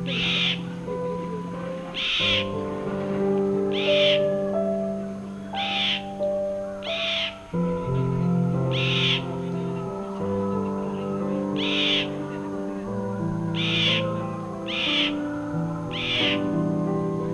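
Indian roller giving short harsh calls, about nine in all, one every one and a half to two seconds. Background music of slow held chords plays underneath.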